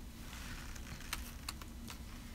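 Quiet room tone with a few faint, scattered clicks and light handling noise from a hand on a plastic stencil lying over a card.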